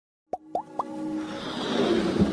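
Animated-intro sound effects: three quick pops, each gliding upward in pitch, about a quarter second apart, then a whoosh that swells steadily louder.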